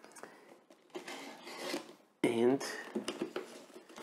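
A Victorinox Swiss Army knife blade slitting open a plastic courier mailer, with soft scraping and rustling of the plastic and tape and a few small clicks. A short vocal sound comes a little over two seconds in.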